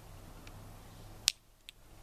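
Two light clicks a little over a second in, the first sharper, over a faint low hum: small glass specimen vials knocking together in the hand.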